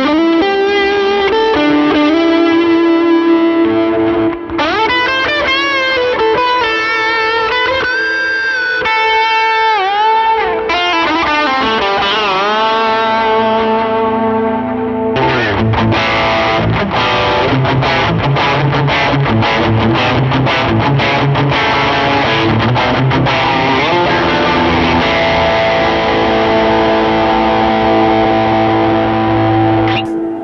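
Music Man Valentine electric guitar played through light overdrive and distortion. The first half is held single notes with string bends and vibrato. From about halfway it is fast, rhythmic strummed chords.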